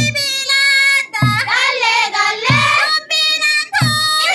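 Group of voices singing a chanted melody, with a deep thump keeping time about every second and a quarter.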